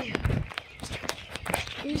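Footsteps and knocks: a dull thump about a quarter second in, then a few scattered clicks.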